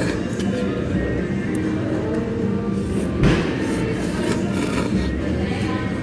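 A person slurping ramen noodles over steady background music, with a louder slurp about three seconds in.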